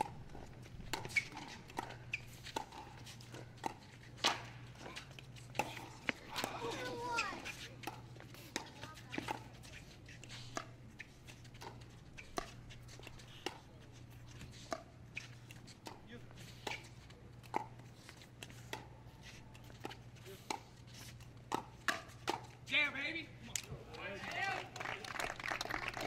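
Pickleball rally: a plastic ball struck back and forth by paddles, a string of sharp pops at an uneven pace over a steady low hum. Brief voices come in a couple of times, most clearly near the end.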